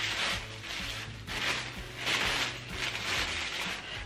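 Tissue paper crinkling and rustling in several short bursts as a wrapped item is pulled open by hand.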